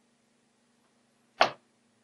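A single sharp click about one and a half seconds in, over a faint steady hum.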